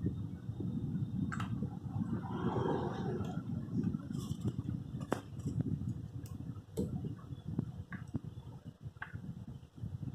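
Scattered light clicks and knocks of hands handling fittings on a motorcycle's handlebar and headlamp, a few seconds apart, over a steady low rumble.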